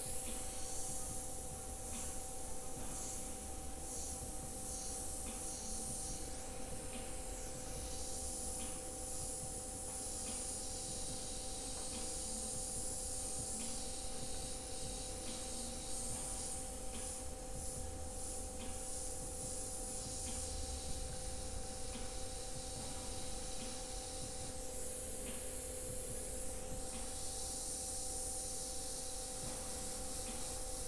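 Airbrush hissing as it sprays paint in short passes, the air swelling and dropping as the trigger is worked, with a steady hum underneath.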